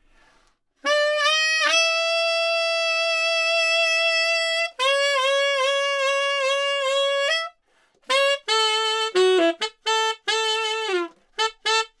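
Tenor saxophone playing a phrase in its high register. It climbs quickly through high E and F to a high F-sharp held about three seconds, then plays a run of tongued repeated D-sharps that rise back to F-sharp. After a short break it plays a choppier phrase of repeated B's dipping to G-sharp and F-sharp.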